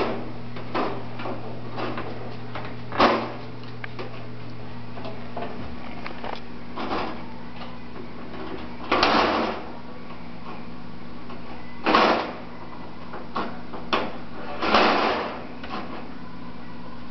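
Metal cutlery clattering in an open kitchen drawer as a toddler handles it: several separate rattles and knocks, the longest about nine seconds in and near the end.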